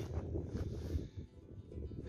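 Wind rumbling unevenly on the camera microphone, with faint background music.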